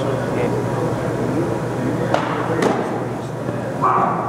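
Indistinct murmur of voices over a steady low hum, with two sharp knocks a little over two seconds in, about half a second apart.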